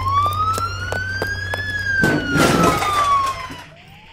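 Police siren wailing, sliding up in pitch and falling back in one long sweep, with a new rise starting near the end. Under it run quick, evenly spaced footsteps of someone running, and a rough burst of noise comes about two seconds in.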